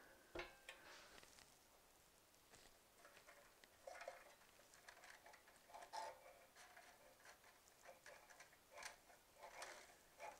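Near silence: room tone with a few faint, scattered small clicks and rustles.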